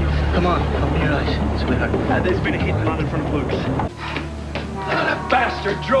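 Background music holding a low chord under a hubbub of overlapping, unclear voices. The sound drops suddenly about four seconds in, then a new low held note and the voices carry on.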